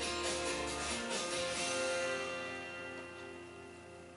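Instrumental background music with plucked guitar and a steady beat, fading out over the last two seconds.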